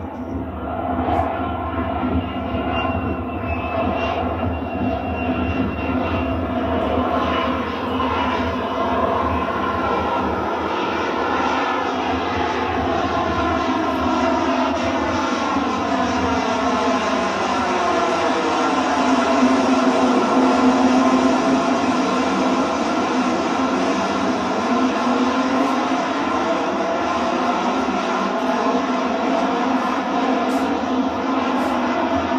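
Harrier jump jet's Pegasus turbofan running steadily as the jet hovers, a continuous loud jet noise. About two-thirds of the way through, its tones dip in pitch and rise again.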